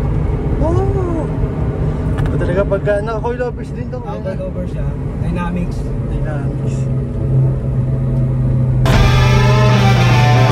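Honda Civic SiR's B16A DOHC VTEC four-cylinder heard from inside the cabin, droning steadily while cruising at highway speed; its pitch steps down a little about halfway through. Music comes in near the end.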